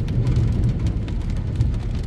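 Steady low rumble of a car heard from inside its cabin, with rain ticking lightly on the windshield and roof.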